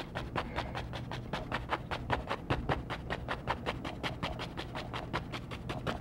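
A large two-inch paint brush tapped repeatedly against a canvas in rapid, even taps, about seven or eight a second, as thick oil paint is dabbed on.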